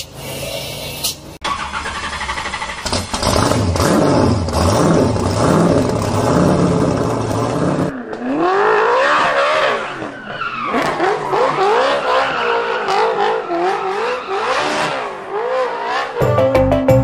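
Vehicle engines revving, the pitch climbing and falling again and again. About halfway through, the revs go higher and sweep up and down faster.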